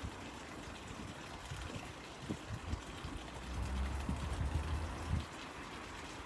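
Quiet outdoor background with a steady faint hiss, and faint small sounds of a man sipping from a mug. A low rumble swells for about a second and a half after the middle.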